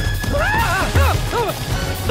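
A cartoon animal's calls: about five short cries, each rising and falling in pitch, coming in quick succession, over a low rumble and an action film score.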